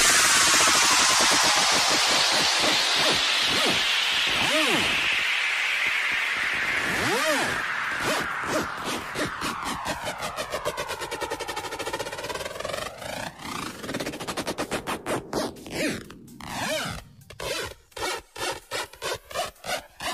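Electronic dance music breakdown with the beat dropped out. A hissing noise sweep falls in pitch and fades over about eight seconds, followed by a swirling, whooshing effect and a choppy, stuttering pattern.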